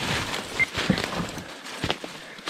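Footsteps of a person hiking up a steep slope: irregular crunching steps and knocks, with one brief high tone about a third of the way in.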